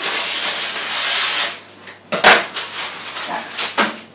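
Baking paper rustling as it is handled over a baking tray, followed by a sharp knock about two seconds in and a lighter one near the end.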